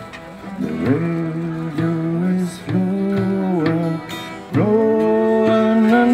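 Acoustic street band playing an instrumental break: a harmonica carries the melody in long held notes over bowed cello, strummed acoustic guitar and a hand drum. The loudest held note comes in about four and a half seconds in.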